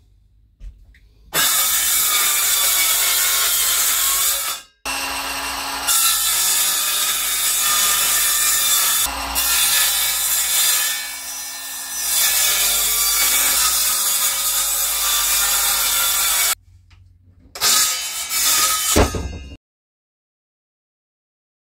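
Circular saw running along a guide rail, cutting plywood. There is one cut of about three seconds, then a long cut of about eleven seconds, then two short bursts near the end.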